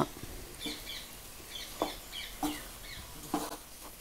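Wooden spatula stirring and folding cooked rice in a nonstick pan, with a few soft knocks against the pan. Faint short bird chirps repeat in the background.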